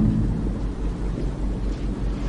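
Steady low hum under an even background hiss, with no distinct events.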